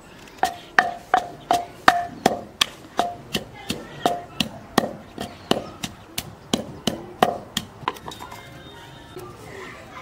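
Wooden pestle pounding in a terracotta clay mortar, about three strikes a second, each knock followed by a brief ringing tone from the pot. The pounding stops about three-quarters of the way through.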